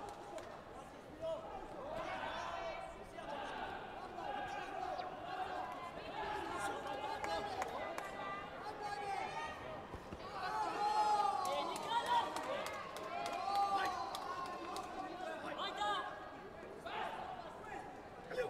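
Overlapping voices of coaches and spectators calling out in a large sports hall, with louder shouts from about ten seconds in, during a taekwondo sparring bout. Scattered sharp thuds of kicks landing and feet striking the foam mats.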